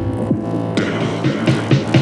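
A deep tech house track in a breakdown with the kick drum dropped out: short synth blips fall in pitch over a low bass line. Bright hi-hat ticks come in about three quarters of a second in.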